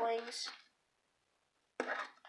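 A child's voice draws out and trails off in the first half-second, then near silence for about a second, then a short noise near the end.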